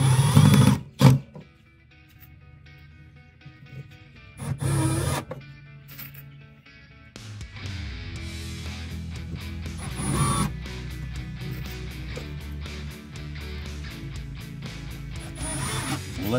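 Cordless drill-driver driving pocket-hole screws into a glued pine panel in a few short bursts, the screws run in just snug, over background music.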